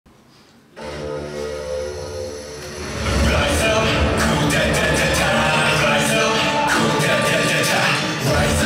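Opening of a K-pop dance track: silence, then about a second in a held-chord intro starts. About three seconds in the full beat with drums and bass comes in and runs on at full level.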